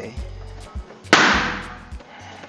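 A single sudden loud bang about a second in, trailing off in a hiss over most of a second, over quiet background music.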